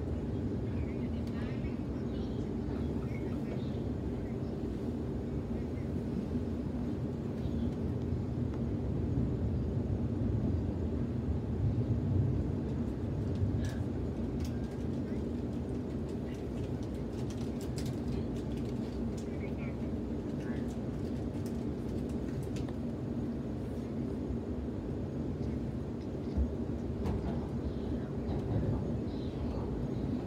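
Steady low rumble and hum of a Sydney Trains Waratah A-set electric train heard from inside the carriage while it runs between stations, swelling slightly about a third of the way in. Faint passenger voices sit underneath.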